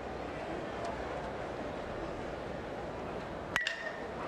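Steady ballpark crowd noise, then about three and a half seconds in an aluminum bat meets the ball with a sharp ping that rings briefly: a hard-hit ground ball.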